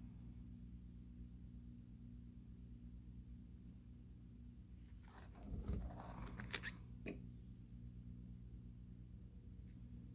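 A plastic binder sleeve page being turned, crinkling and rustling for about two seconds starting about five seconds in and ending in a short click. A low steady hum runs underneath.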